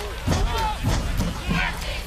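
Football game crowd and field noise, with brief, indistinct voices.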